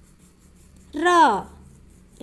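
Speech only: a single drawn-out spoken syllable "ra" about a second in, its pitch rising then falling, over a faint low background hum.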